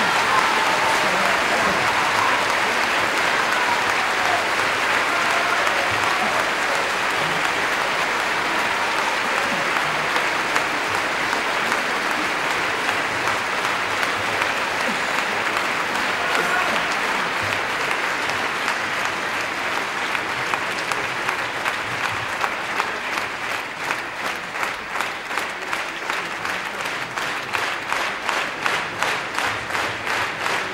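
Theatre audience applauding; from about twenty seconds in the applause turns into rhythmic clapping in unison.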